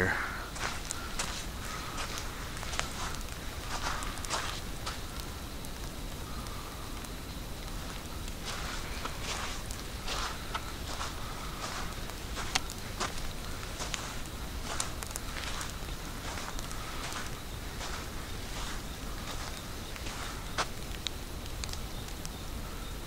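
Footsteps of a person walking on a sandy dirt road, about two steps a second, some louder than others.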